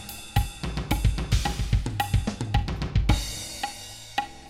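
Sampled drum kit playing back a written linear gospel chop in notation software: a quick string of kick, snare and hi-hat strokes with accented cymbal hits. It ends on a cymbal crash about three seconds in that rings out.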